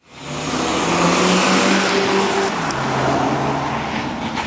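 Audi A1 driving under power, its engine note fading in, holding steady, then stepping down in pitch about two and a half seconds in.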